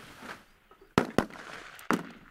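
Three M16A2 rifle shots: two in quick succession about a second in, then a third near the end.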